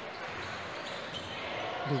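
Steady background noise of a basketball game in a sports hall: sparse crowd and play on court, with no single sound standing out.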